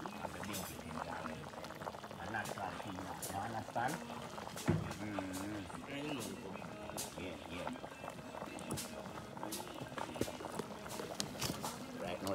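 Soup boiling in a large metal pot over an open wood fire, bubbling steadily with scattered sharp pops and crackles. Voices and music carry on underneath.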